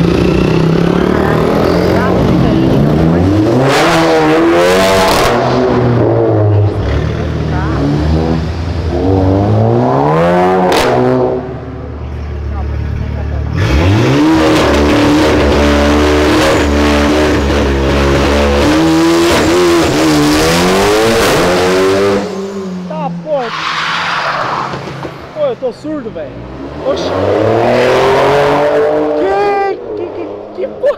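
Cars pulling away under hard acceleration one after another, each engine climbing in pitch as it revs. The longest and loudest pull, about halfway through, is a red Audi RS3's turbocharged five-cylinder engine.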